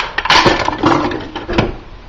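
Rummaging and handling noise close to the microphone: a few sharp knocks and clatters of small objects being moved about, mixed with rubbing.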